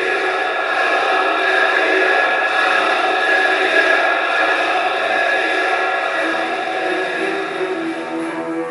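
Documentary soundtrack playing through a television's speaker: a loud, steady, dense wash of sound, with music notes coming in about six seconds in.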